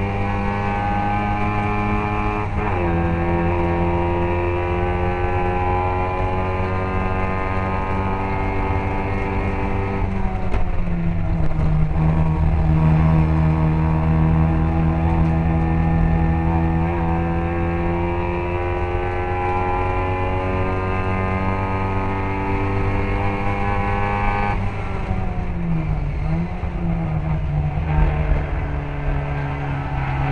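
Classic Mini race car's engine running hard under racing load, one strong continuous engine note whose pitch drops sharply three times: a few seconds in, about ten seconds in and around 25 seconds.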